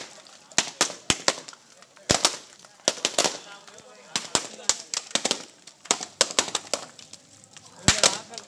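Whole coconuts thrown down hard onto the road and splitting open, one after another: sharp cracks at irregular intervals, often two or three a second, with voices in the background.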